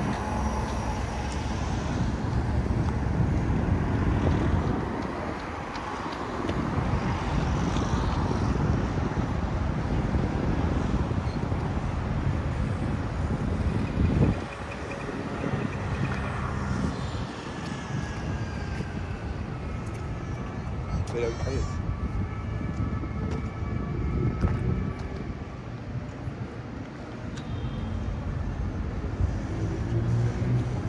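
City street traffic: engine rumble and tyre noise from cars and a double-decker bus passing close, rising and falling as vehicles go by, with voices of passersby.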